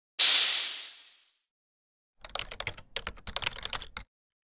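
Opening sound effects for an animated logo card. A loud hiss-like whoosh fades away over about a second. After a pause, a rapid, uneven run of clicking like keyboard typing lasts about two seconds.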